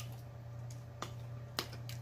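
A few faint clicks and smacks from eating and handling food, four in about two seconds, over a steady low hum.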